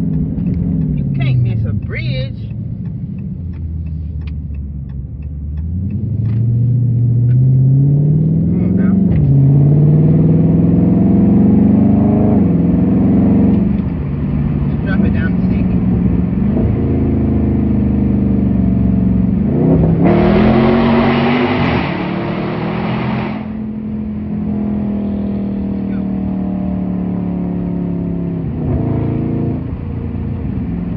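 Dodge Charger Scat Pack's 6.4-litre HEMI V8 heard from inside the cabin on the move, its pitch rising under acceleration and dropping back at each upshift several times, then holding steady at cruise. About twenty seconds in, a loud rushing noise lasts for about three seconds.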